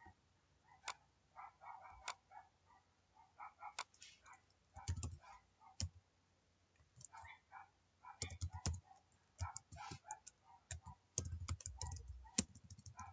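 Computer mouse clicks: a few single sharp clicks in the first four seconds, then keyboard typing in irregular bursts of keystrokes, busiest near the end, as an IP address and subnet mask are typed in.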